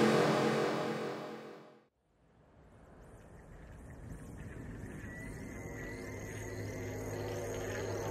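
Electronic music: a loud crash dies away in the first second and a half, then after a moment of silence the quiet atmospheric intro of a drum and bass track fades in, a low drone with faint high sweeps repeating a little under twice a second, slowly growing louder.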